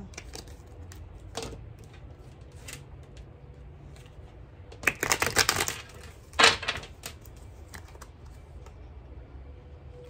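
Tarot deck shuffled by hand: a few faint card flicks, then a quick run of crisp card clicks about five seconds in, and one sharp snap of cards a moment later.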